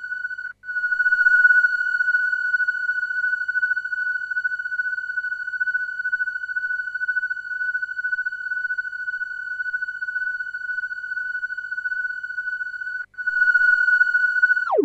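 Roland Super JX-10 analog polysynth with the JX10se upgrade holding one steady, high, nearly pure tone with faint overtones. The tone cuts out for an instant twice, about half a second in and about a second before the end.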